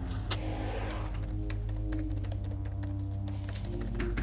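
Rapid typing on a laptop keyboard, a quick patter of key clicks, over background score music of low held notes. A single click sounds just after the start, as a door handle is turned.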